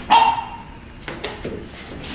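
A dog barks once, a short sharp bark right at the start, followed by fainter brief sounds.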